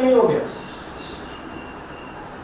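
A man's voice holds a drawn-out syllable that falls in pitch and trails off about half a second in, followed by a pause filled with steady room noise and a faint, steady high-pitched whine.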